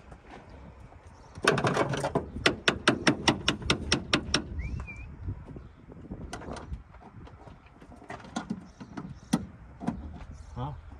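Ratchet wrench clicking rapidly at the truck's battery, about six clicks a second for some three seconds, followed by a few scattered knocks.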